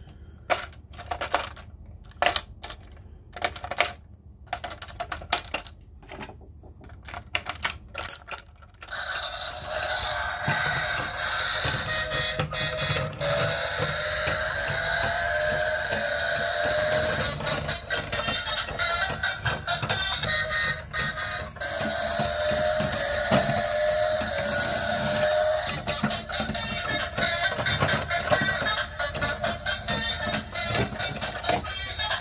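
Sharp plastic clicks and snaps as a battery-powered toy vehicle is handled around its AA battery compartment, for about the first nine seconds. Then music with a repeating melody plays steadily.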